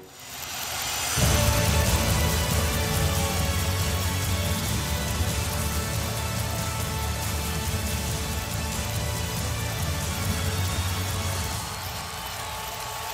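Outro jingle music: a rising swell, then about a second in a deep bass comes in and a steady, dense, hissy music bed runs on, easing off slightly near the end.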